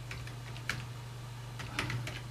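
A few keystrokes on a computer keyboard: a single key about two-thirds of a second in, then a quick run of keys near the end, as a short terminal command (dmesg) is typed. A steady low hum runs underneath.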